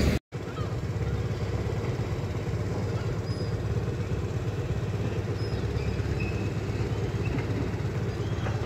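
Motorbike engine idling steadily. The sound drops out completely for a moment just after the start.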